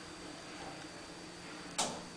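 Steady faint background hum with a thin high whine, and one short sharp rustle or knock near the end, like the camera being handled.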